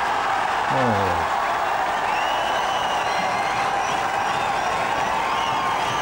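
Tennis crowd applauding steadily after a point, with a few faint high whistles, under a commentator's voice that trails off about a second in.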